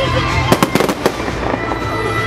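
Fireworks going off: a quick run of sharp cracks about half a second in, over background music.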